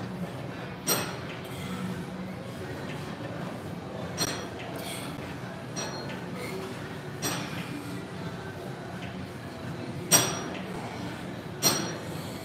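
Weight-stack plates of a pec fly machine clinking as each rep lowers the stack, six sharp metallic clinks a second or more apart, the loudest about ten seconds in, over a steady low gym hum.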